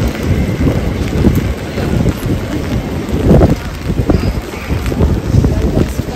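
Rain on a wet city street, with wind rumbling and gusting on the microphone.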